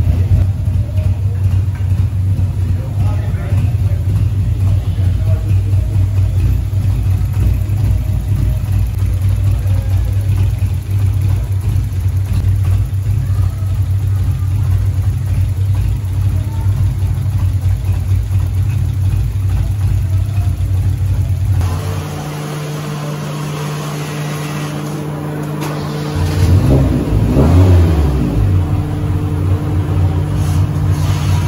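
Fiat Uno 1.6R's four-cylinder engine, fitted with FuelTech FT300 injection and a Bravo 288 camshaft, running steadily while its ignition timing is set with a timing light. About two-thirds of the way through the sound cuts abruptly to a quieter, steadier running note. Near the end the engine is revved up and back down once.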